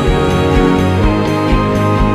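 A band playing an instrumental passage of a song, with no vocals. Sustained chords ring over bass and a steady drum beat.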